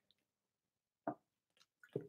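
A man sipping and swallowing from a paper takeaway cup: two short, faint wet sounds, one about a second in and one near the end, with near silence between.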